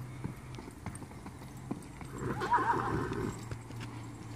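Young horse's hoofbeats on the dirt of a round pen as it moves on a lunge line, with a wavering whinny lasting about a second, a little over two seconds in.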